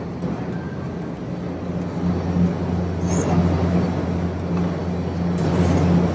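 Steady low mechanical hum under a noise wash, with faint voices in the distance: airport terminal background noise.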